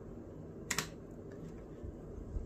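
A single sharp plastic click about a third of the way in, with a couple of faint ticks near the end, from handling a laptop blower fan's plastic housing as its top cover is pulled off.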